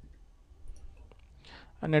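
A few faint, scattered clicks of a computer mouse and keyboard being worked, then a man starts speaking near the end.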